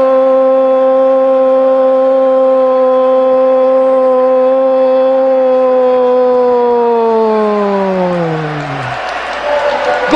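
A sports commentator's long drawn-out goal shout, "goooool", held on one loud note for several seconds for a goal just scored. Near the end the note slides steadily down in pitch as his breath runs out and it fades away.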